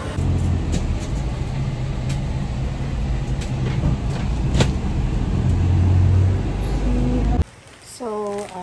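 Engine and road rumble heard from inside a moving ambulance, steady and low with a few sharp knocks, swelling louder around six seconds in and cutting off suddenly near the end.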